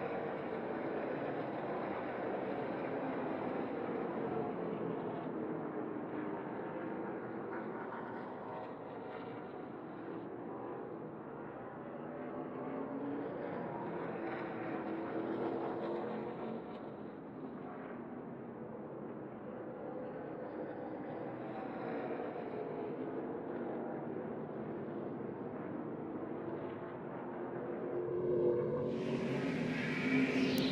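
Race-truck V8 engines lapping a road course, their pitch rising and falling in overlapping curves as they rev up on the straights, shift and slow for corners. The sound grows louder and brighter near the end as trucks come closer.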